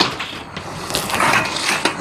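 A corrugated galvanized steel panel scraping and clicking as it is slid by hand over the old metal roof panels.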